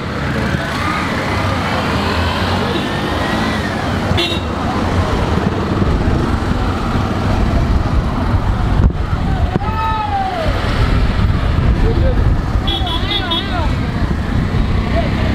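Street traffic made mostly of auto-rickshaw engines running close by, with a short horn toot about four seconds in and another near the end. Voices call out over the engine noise.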